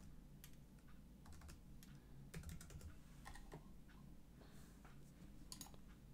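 Faint clicks of a computer keyboard and mouse: scattered single keystrokes and clicks, with a quick run of several about two and a half seconds in.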